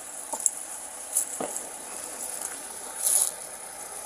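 Clothing rustling, with a few light clicks and rattles, during a hand search of a person's clothes. There is a short burst of louder rustling about three seconds in.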